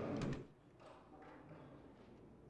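Murmur of a crowd of people in a hallway cuts off abruptly about half a second in, leaving quiet room tone with a few faint knocks.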